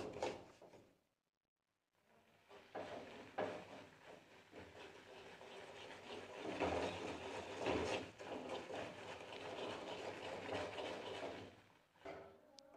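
Wooden spatula stirring and scraping semolina as it roasts in a steel kadai: a faint, irregular scraping that grows louder from about six seconds in.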